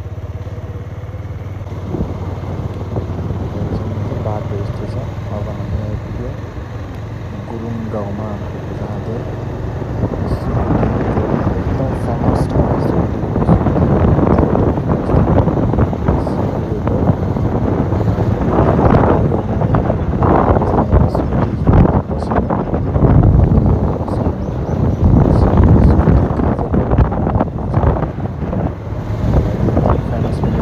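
Motorcycle engine running at road speed, heard from on board, with wind buffeting the microphone. The wind noise grows louder and gustier from about ten seconds in.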